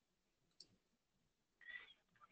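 Near silence: room tone with a faint click about half a second in and a short, faint high-pitched squeak near the end.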